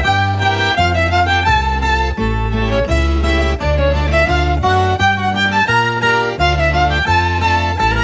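Folk-style band music: a fiddle playing a wavering melody over guitar and a bass line that steps from note to note, an instrumental passage of a Finnish folk ditty.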